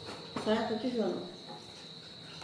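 A cricket's steady high-pitched trill, unbroken throughout, under a brief spoken word about half a second in.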